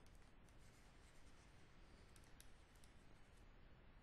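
Near silence: faint room hiss with a few soft ticks and scratches of a stylus writing by hand on a tablet.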